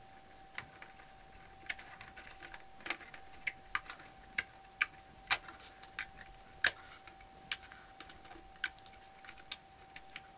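Irregular light clicks and snaps of rubber loom bands slipping off the clear plastic pegs of a Rainbow Loom as the woven piece is pulled free, with a faint steady tone underneath.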